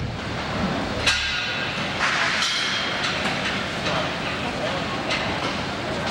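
Busy exhibition-hall ambience of indistinct voices and the clatter of wooden layout modules being handled, with sharp knocks about a second in, twice more around two seconds, and again near the end.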